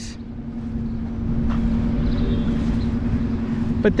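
Steady low rumble of road traffic, with a constant low hum underneath.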